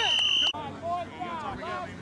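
A referee's whistle blast, one steady shrill tone that cuts off sharply about half a second in, followed by fainter voices of players and spectators across the field.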